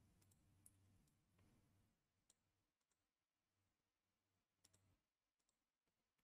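Near silence, broken by a few very faint computer-mouse clicks, spaced a second or more apart.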